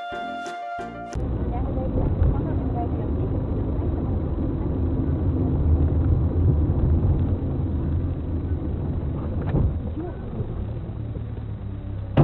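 Brass-band music ending about a second in. It gives way to a continuous low rumble of a car's engine and road noise heard from inside the moving car, as recorded by a dashcam.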